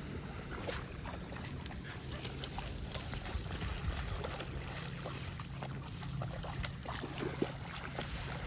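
Light, scattered splashing of feet wading and running through shallow river water, over a steady low hum.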